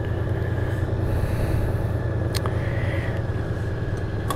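Honda Gold Wing GL1800 flat-six engine idling steadily with a low, even rumble, and a light click about two and a half seconds in.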